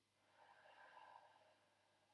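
Near silence, with one faint breath, like a slow exhale, starting about half a second in and lasting about a second.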